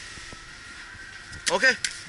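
Steady, faint room tone of a shop, an even hiss with no distinct events. Near the end a voice says a short "okay", followed by a small click.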